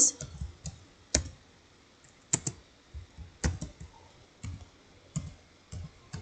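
Computer keyboard being typed slowly, key by key: about eight or nine single, irregularly spaced clicks, as a short phrase is typed one letter at a time.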